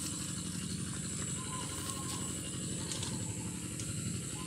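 A steady, fast low rattle of a running machine, with a faint steady high whine above it.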